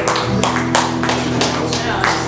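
A live acoustic guitar and drum kit playing together: drum and cymbal strokes fall about three a second over held, strummed guitar chords.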